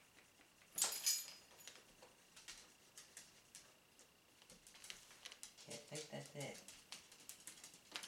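Faint rustling and small clicks of a plastic-wrapped package being handled on a table, with one louder rustle about a second in.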